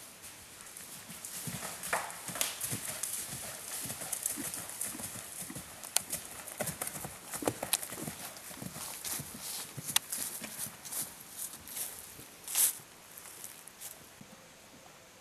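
Hoofbeats of a horse cantering over turf and fallen leaves, a quick, uneven run of thuds, with one louder thump near the end.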